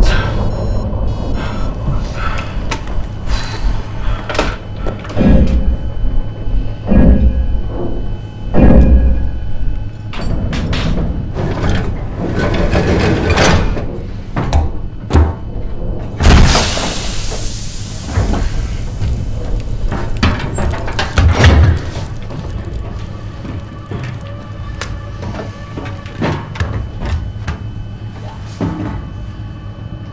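Film score over a submarine sound-effects track: a steady low hum with repeated metal clanks and thuds. About halfway through, a loud hiss of air sounds as a round floor hatch is opened with its handwheel, then fades.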